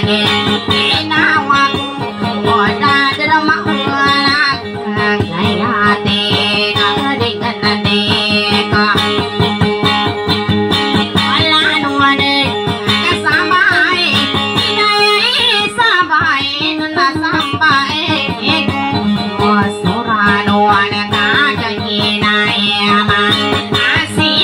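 Acoustic guitar played in a busy, steady rhythm under a voice singing a wavering, bending melody: live dayunday music.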